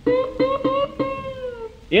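Old acoustic country record with steel guitar and guitar: one long held note that sags in pitch near its end, over even guitar strums about four a second, filling the gap between sung lines. Just before the end a quick upward slide leads into the next verse.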